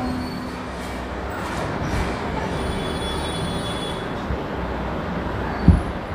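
Steady background noise with a low rumble and hiss during a pause between speech, with a short click near the end.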